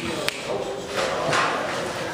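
Show-ring ambience in a large metal barn with market hogs moving about: a steady murmur of background voices, one sharp knock just after the start, and a short rough noise about a second in.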